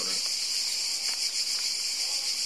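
A steady, high-pitched chorus of insects in summer foliage, continuous and unbroken, with a fine rapid pulsing.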